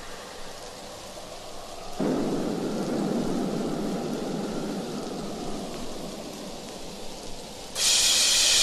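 Thunderstorm sound effect in the intro of a 1990s electronic dance track. A low rumble sets in suddenly about two seconds in and slowly fades over a hiss like rain. A bright hiss cuts in just before the end.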